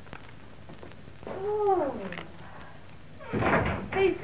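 A woman's drawn-out wordless vocal sound, its pitch rising a little and then sliding down, about a second in. Near the end come a breathy outburst and another short voiced sound.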